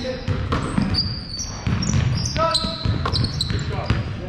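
A basketball bouncing on a hardwood gym floor, with a series of short knocks echoing in the large hall, short high squeaks, and players shouting.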